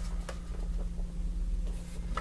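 Felt-tip marker scratching in short strokes on a paper card, with light rustling as the card is handled, over a steady low electrical hum.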